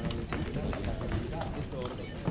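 Several voices at once, unintelligible, with irregular knocks and scuffs of footsteps as performers move about on the stage.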